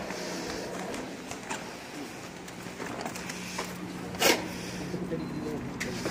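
Indistinct voices over a steady low hum, with a few light clicks and one sharp knock about four seconds in.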